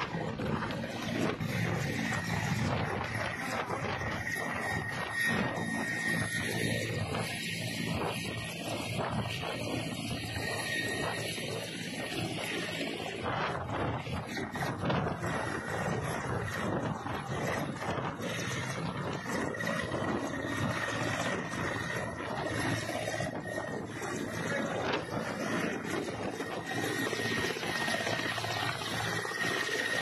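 Mi-17-type transport helicopter on the ground with its rotors turning. A steady, dense rotor and engine noise runs throughout, with a thin high turbine whine on top.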